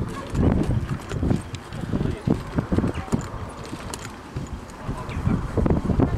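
Hoofbeats of a trotting horse on a sand arena surface: dull, uneven thuds a few times a second.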